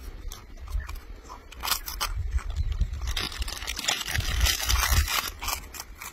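A marmot biting and chewing a piece of food, a quick run of crisp crunches that grows denser and louder in the second half, over a steady low rumble.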